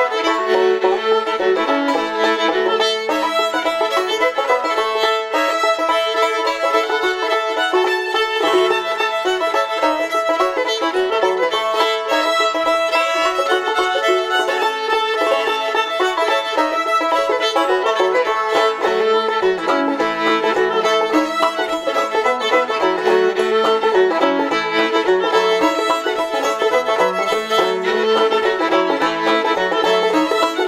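Instrumental fiddle-and-banjo duet: a busy bowed fiddle melody over plucked banjo, with a held low drone note underneath.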